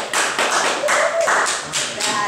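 A few people clapping: a short run of sharp hand claps, about three or four a second.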